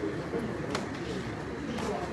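Low murmur of voices in a room, with two sharp clicks, one about three-quarters of a second in and one near the end.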